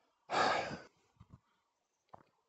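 A man's sigh: one breathy exhale lasting about half a second, followed by two faint short knocks.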